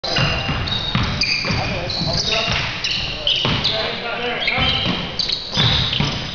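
Sneakers squeaking on a hardwood gym floor, many short high squeaks in quick succession, with a basketball bouncing on the floor.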